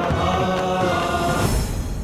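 Background music score with a chorus of chanting voices holding long notes, which dies away about one and a half seconds in.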